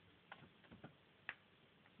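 Near silence broken by a few faint, scattered clicks.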